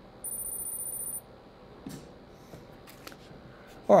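A steady, very high-pitched electronic tone lasting about a second, followed by a few faint clicks.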